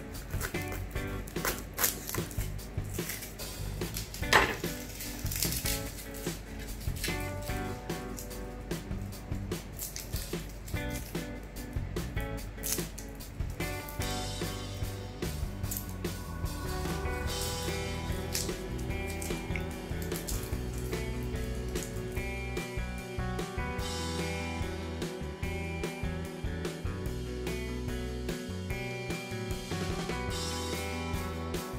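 Background music over a chef's knife cutting a garlic bulb on a plastic cutting board. The blade knocks sharply on the board several times in the first half, loudest about four seconds in.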